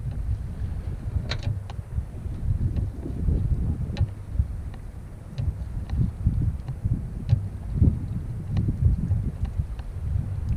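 Wind buffeting the microphone in a gusty low rumble, with scattered small clicks and drips as a wet cast net rope is hauled in hand over hand.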